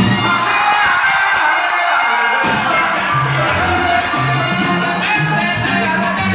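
Salsa music played loud over a hall's sound system, heard from the audience. The bass drops out for about two seconds near the start and comes back in, with crowd noise underneath.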